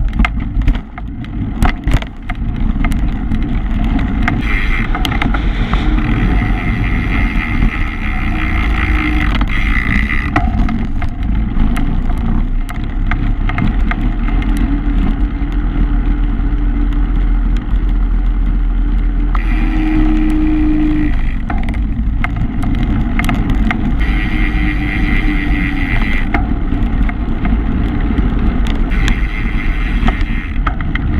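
Wind buffeting the microphone of a camera on a moving bicycle, with the bicycle's rolling noise, a loud steady rumble. There are a few sharp knocks in the first couple of seconds.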